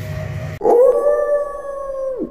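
A howl sound effect edited in: one long howl that starts suddenly about half a second in, holds a steady pitch, then drops away just after the end. The room noise is cut out beneath it.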